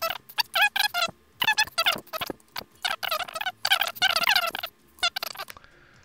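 A man's voice played back sped up: rapid, high-pitched, chipmunk-like chatter with no words that can be made out. It stops about half a second before the end.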